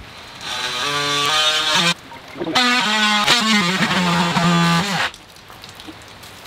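Cordless power saw cutting through pipe at a well head, run in two bursts of about one and a half and two and a half seconds with a short break between, its pitch shifting as it runs.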